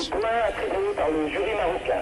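Speech: a voice talking, with no other sound standing out.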